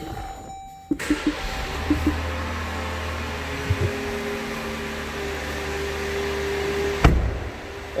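Dodge Durango's 3.6-litre Pentastar V6 starting up about a second in and settling into a steady idle hum, with a held tone over it. Near the end a car door shuts with one sharp thud, and the sound is quieter after it.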